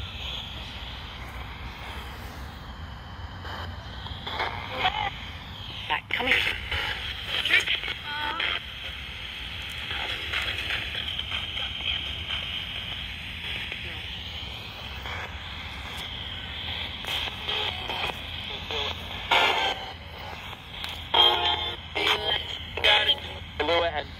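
Handheld radio used as a ghost-hunting spirit box: a steady hiss of static broken by short, choppy fragments of voices and music that cut in and out.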